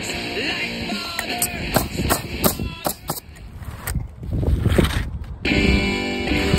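Rock music with guitar and drums. It thins to a sparse passage of separate sharp hits in the middle, then the full band comes back in near the end.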